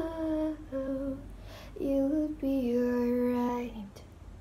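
A woman's voice singing unaccompanied, holding about four long notes with short breaths between them. The last and longest note slides down in pitch and stops just before the end.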